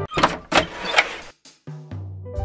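Electronic intro music breaking into three or four short whooshing transition effects in the first second, then two brief dropouts to silence before a low note and the next music begin.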